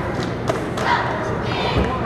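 Cheerleaders shouting a cheer in short unison calls, with thuds from stomping and landing feet on the hardwood court and a deep thud near the end.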